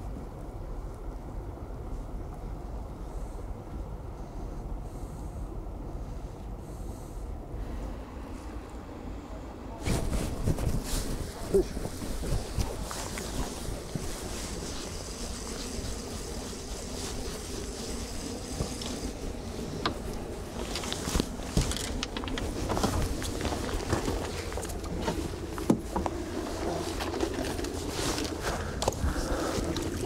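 Open-air ambience on a fishing boat: a steady low rumble of wind on the microphone with scattered knocks. The sound jumps louder and noisier about ten seconds in.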